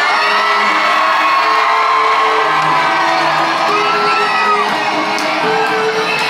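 Live pop music through a stadium sound system, with held synth notes, while the crowd screams and whoops over it in high, gliding voices. Recorded from within the audience, so the crowd is close and the music distant and reverberant.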